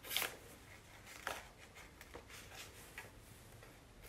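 Scissors snipping through black construction paper: a few short, faint cuts about a second apart, the first the loudest.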